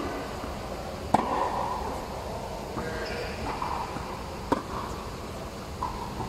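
Tennis racket striking balls fed by a ball machine: two sharp hits about a second in and about four and a half seconds in, with a smaller knock near the end. Each hit echoes under the fabric dome.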